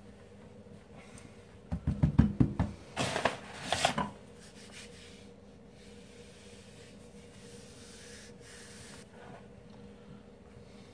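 Wooden rolling pin and hands working pie dough on a floured wooden board: about two seconds of quick rubbing strokes and light knocks, starting a couple of seconds in. After that only a faint steady hum.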